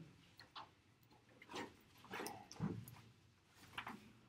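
Pages of a paperback book being leafed through: a few soft flicks and rustles spread across the few seconds, with quiet between them.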